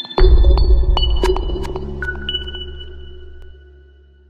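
Electronic logo-intro music sting: a deep bass hit just after the start, with high pinging tones entering one after another over a fading low drone, dying away near the end.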